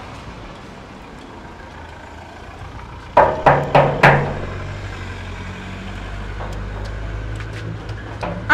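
Four sharp bangs on a corrugated sheet-metal gate, each ringing briefly, about three seconds in, over a steady low engine hum.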